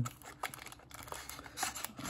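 Small cardboard box being opened by hand: quiet rustling and scraping of card and paper, with a few light clicks and crinkles from the plastic wrapping inside.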